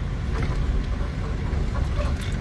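Car running, heard from inside the cabin: a steady low rumble.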